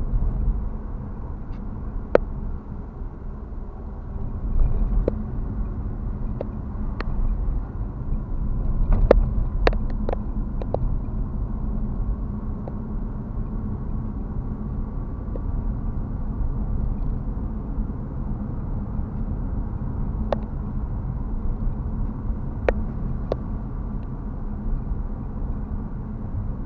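Engine and road noise heard inside a moving car's cabin: a steady low rumble, with scattered sharp clicks and knocks, several close together about nine to eleven seconds in.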